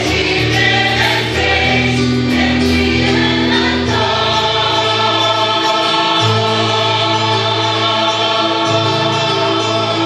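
Mixed choir of men and women singing a sacred choral piece in long held chords that move every second or two.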